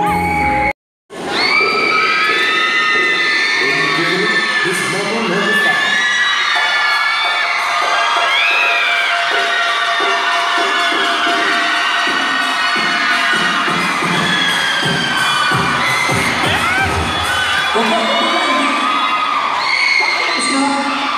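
Music cuts off abruptly less than a second in, then a crowd cheers and screams loudly, with many high-pitched shrieks and shouts overlapping.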